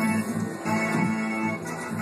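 Mr. Cashman slot machine's bonus-feature music: an organ-like electronic tune with held chords over a steady pulsing beat.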